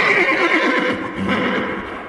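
A horse whinnying over galloping hoofbeats, fading away in the second half.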